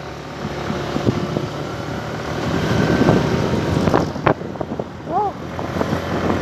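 Small motorcycle engine running while the bike is ridden along a road, with wind noise on the microphone.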